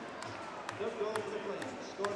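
Ice hockey arena sound: a low crowd murmur with a few sharp clicks of sticks and puck on the ice.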